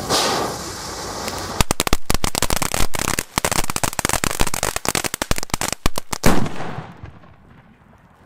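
Funke Mixed Flowers P1 report cracker going off. Its fountain preburner hisses for about a second and a half, then crackles densely for about five seconds, and the loudest bang comes just after six seconds in.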